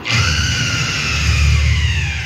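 A sudden loud dramatic burst from the stage accompaniment: a deep rumble under a long high tone that rises and then slowly falls over about two seconds.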